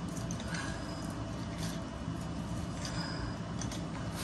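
Low steady room noise with a few faint, soft taps and rustles of play on a foam playmat: small toy cars being moved and a person kneeling onto the mat.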